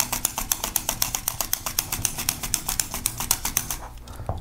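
A raw unpeeled potato being pushed rapidly back and forth across a mini mandolin slicer fitted with a dual-blade peeler, cutting thin slices. It makes a fast, even run of short scraping strokes, several a second, that stops just before the end.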